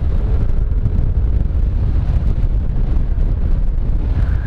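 Steady rush of wind buffeting the microphone of a motorcycle riding at about 76 km/h, with the engine's hum running underneath.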